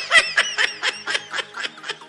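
A person laughing in quick, rhythmic ha-ha pulses, about five a second, over faint background music.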